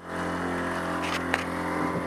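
A 12-volt water pump running and water flowing from the sink faucet into the basin, a steady rush that starts the moment the faucet opens, with a low hum beneath it. The flow is weak, without much water pressure. Two light clicks come a little past a second in.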